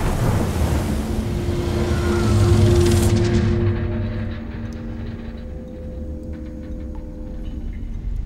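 Film-trailer sound design of a storm at sea: a deep rumble with a windy, spray-like hiss over low held droning tones. The hiss fades about three seconds in, leaving the low rumble and drone with faint ticks and creaks.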